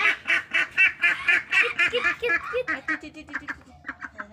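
Ducks quacking in a rapid, steady series, about four or five quacks a second, which grow quieter over the last second or so.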